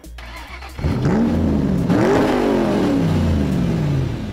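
Car engine revving up, its pitch rising, then dropping briefly about two seconds in as at a gear change before rising again and slowly falling away.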